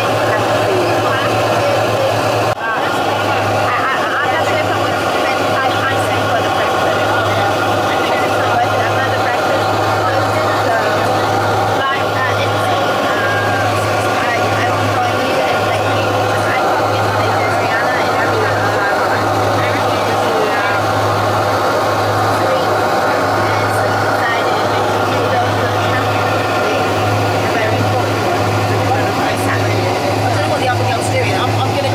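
Turboprop airliner's engines and propellers at taxi power heard inside the cabin: a steady drone over a low propeller hum that throbs regularly in level.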